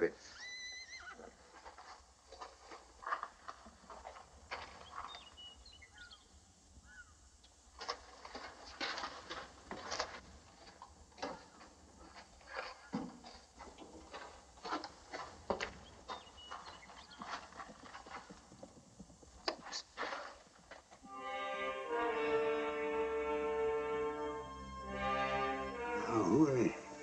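Horses approaching: a whinny near the start, then scattered hoofbeats and knocks. Film score music with held chords comes in near the end.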